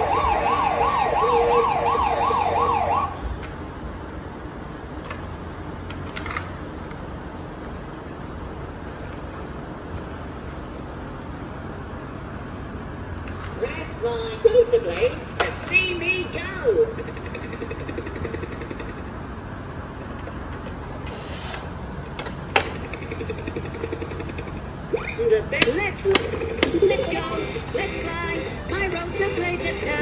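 A toy police car's electronic siren warbles rapidly for about three seconds, then cuts off. Later come a few sharp knocks of plastic toys and short vocal sounds.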